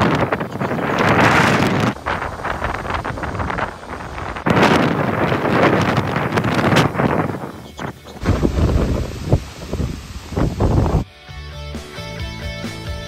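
Strong storm wind buffeting the microphone in loud gusts around a plastic-film greenhouse, the rush changing abruptly several times.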